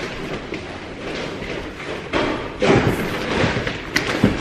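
Rustling and thumps from a large, heavy shopping bag as it is carried and handled, louder about two seconds in.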